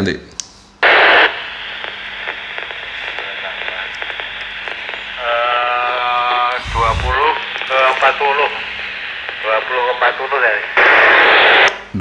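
A distant station's voice comes through the loudspeaker of a handheld VHF transceiver, thin and buried in steady hiss. A short loud burst of static opens the reply about a second in, and another ends it near the end.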